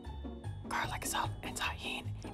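Background music with a steady, regular beat, with a soft voice over it from about a second in.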